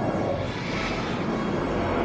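Starship fly-by sound effect from a science-fiction film score: a loud, steady rushing swell that peaks in the first second, with orchestral music underneath.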